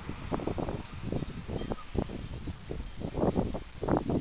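Wind gusting on the camera's microphone, giving an irregular, uneven low rumble that comes in short puffs.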